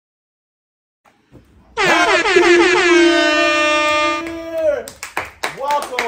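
An air horn blasts once: a single held note about three seconds long that slides up at the start and falls away at the end. Voices call out right after it.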